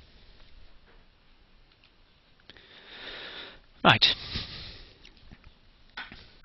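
A person's breath drawn in at the microphone, about a second long, just before the single spoken word "Right"; a faint click comes just before the breath.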